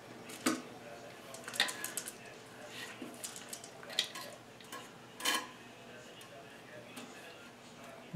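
A handful of faint, scattered clicks and knocks as plastic flush-valve repair parts are handled and fitted inside a dry porcelain toilet tank, the loudest about five seconds in.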